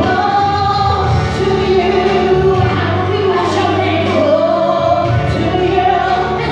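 A woman singing a gospel praise song into a microphone, amplified through a hall's sound system, over steady musical accompaniment.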